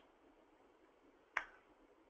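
Near silence, broken once by a single short, sharp click a little over a second in.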